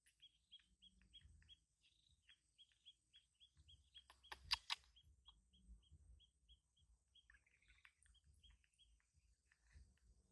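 A bird calling faintly in a long, even series of short high notes at one pitch, about three a second, which fades out about three-quarters of the way through. A brief cluster of sharp clicks a little before halfway is the loudest sound.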